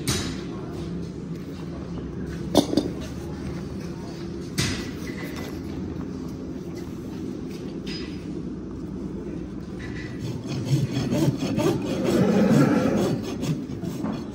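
Farrier's hoof knife and rasp scraping and paring the horn of an overgrown pony hoof, a rough steady scraping broken by a few sharp clicks, with a louder stretch of scraping near the end.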